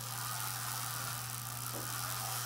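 Hand-cranked Wimshurst electrostatic machine, its two contra-rotating discs spinning with a steady whir and faint hiss over a low hum while charge builds across a widened spark gap; no spark jumps yet.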